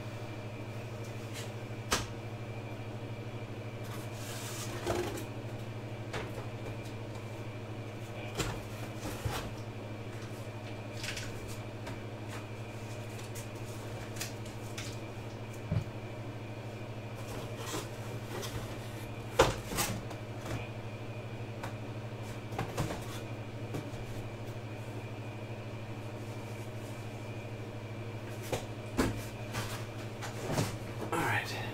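A steady low electrical hum with scattered knocks and clunks of things being handled and set down, the sharpest about two-thirds of the way through.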